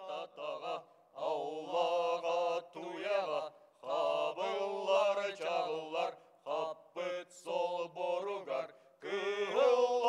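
Group of men chanting a song together unaccompanied, in short phrases of about a second with breaths between, a low held note under a moving melody.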